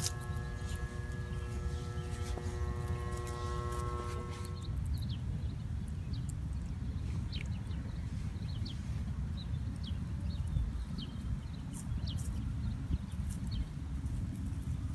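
Quiet outdoor ambience with a low rumble on the microphone. A steady drone of several pitches stops about five seconds in. Faint short high chirps follow.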